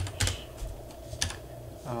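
Computer keyboard being typed on: a few separate keystrokes, spaced out and irregular.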